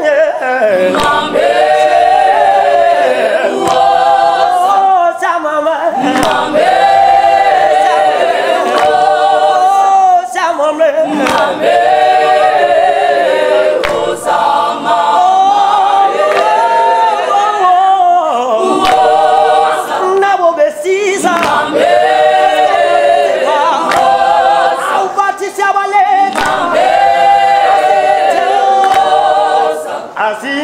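Mixed-voice choir singing a cappella, in sung phrases of a couple of seconds each with brief breaks between them.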